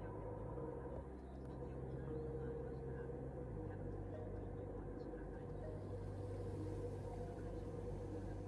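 Airliner cabin noise in flight: a steady low drone.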